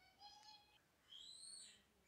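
Near silence with two faint bird calls: a short call about a quarter second in, then a longer whistled call that rises and falls after about a second.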